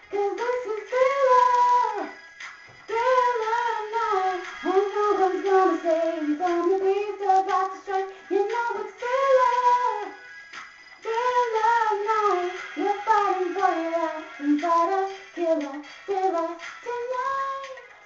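A young woman singing a pop melody unaccompanied in a small room, in phrases of a few seconds with short breaks about two seconds in and near the middle.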